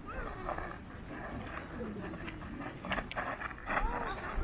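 Indistinct human voices with slow, drawn-out pitch glides, over wind rumbling on the microphone, with a few sharp clicks in the second half.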